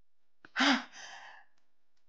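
A person's short voiced gasp about half a second in, trailing off into a breathy sigh.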